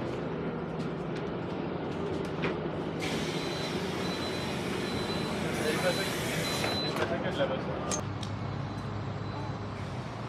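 City bus running at a stop; about three seconds in, a hiss of compressed air starts as its doors open, lasting about five seconds, with a steady high beep sounding for some three seconds of it.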